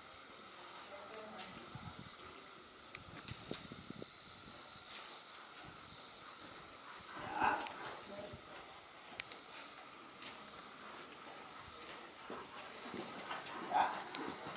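Faint, muffled thuds of a horse's hooves in the sand footing of a riding arena as it trots and canters under a rider, over a low steady hiss. One short, louder voice-like sound comes about halfway.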